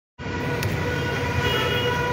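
Road traffic with a low rumble and a vehicle horn held on one steady pitch for nearly two seconds.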